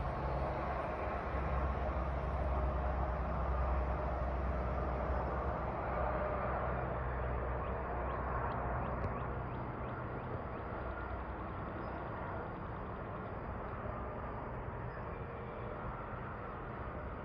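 Steady outdoor background noise: a low rumble under a hiss, easing off after about six seconds.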